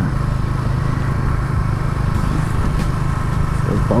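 Motorcycle engine running at a steady speed while the bike is ridden, a constant hum with no revving up or down.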